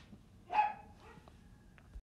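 A single short dog bark about half a second in, over low room tone, with a faint click near the end.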